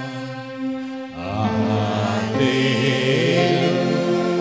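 A man singing a slow Tamil worship song with long, wavering held notes over sustained instrumental chords. The voice drops away briefly about a second in, then comes back.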